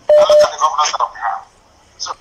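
A short electronic beep on a telephone line, two brief identical tones back to back, followed by a thin, muffled voice coming through the phone line.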